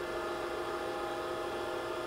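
Okamoto ACC-1224-DX hydraulic surface grinder running: a steady machine hum made of several held tones, with no change through the moment.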